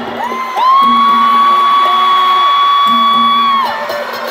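A person in the crowd close to the microphone lets out one long, high-pitched whoop, held steady for about three seconds and dropping off near the end. Behind it the live band plays, with electric guitars and conga.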